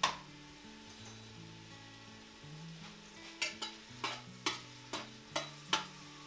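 Diced peppers sizzling in olive oil in a stainless steel pressure cooker, with a spatula scraping and clicking against the pot as they are stirred: about seven sharp strokes in the second half. Soft background music runs underneath.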